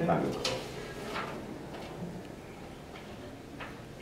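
Papers being handled at a meeting table: a few short handling sounds over quiet voices.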